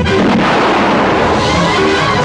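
Film sound effect of a blast: a loud burst of noise that rushes on for about a second and a half, over the film's background music.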